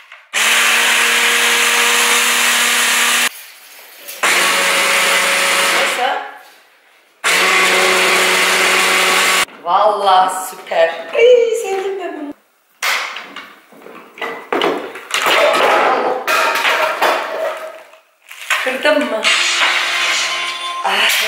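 Electric hand blender with a chopper bowl attachment, run on its turbo setting in three bursts of about three, two and two seconds, chopping sauce ingredients with a steady motor hum. After the bursts there is laughing and talking and some handling knocks.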